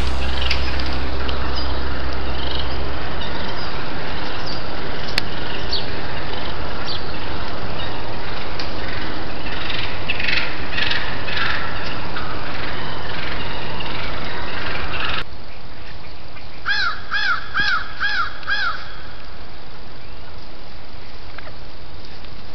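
Steady hiss of outdoor noise on a trail camera's microphone, with a cluster of short bird calls about halfway through. The hiss drops off abruptly at a clip change, and then a bird gives five evenly spaced calls in a row, each rising and falling.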